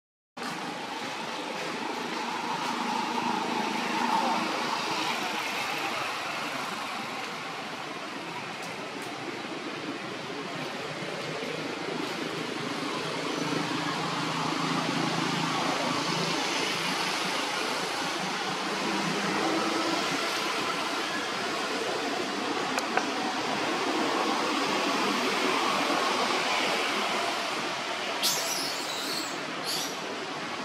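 Steady outdoor background noise with indistinct voices murmuring in it, no clear single source standing out.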